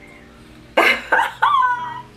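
A woman's voice without words: two short breathy bursts a little under a second in, then a high voiced sound falling in pitch.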